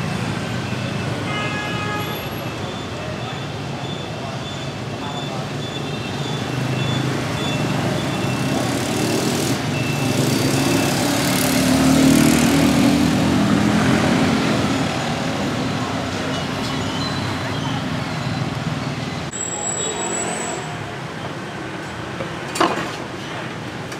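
Steady street traffic noise with a vehicle passing close, loudest about twelve seconds in, and a stack of high tones in the first few seconds. Voices murmur in the background.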